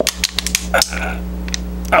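Capped thin plastic water bottle crackling and clicking as it is squeezed hard between the hands. The crackles come mostly in the first second. The air sealed inside keeps the bottle from collapsing.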